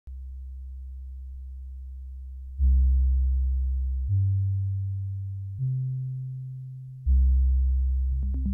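Synthesizer bass with no other instruments. A low note holds steady at first, then four long low notes come in one every second and a half. Each starts sharply and slowly fades, climbing in pitch over the next two and then dropping back to the low note.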